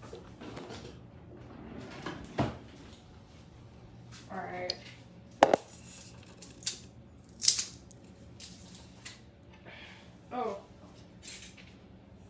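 Metal garlic press and kitchen utensils being handled on a counter: a series of sharp separate clicks and clacks, the loudest about five and a half seconds in. Brief voice sounds come in twice.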